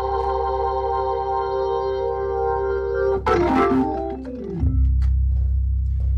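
Hammond A100 organ through its rotating speaker drum on fast speed: a held chord with a quick shimmering waver, then about three seconds in a falling run down the keys that ends on a low held bass note.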